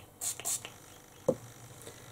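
A woman's soft breathy whispering: two short hissing sounds within the first half second. Then quiet, broken by one sharp short click a little past one second in.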